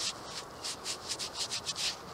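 Gloved fingers rubbing the dirt off a freshly dug coin: a quick run of short, scratchy strokes, about four or five a second, done to make out what the coin is.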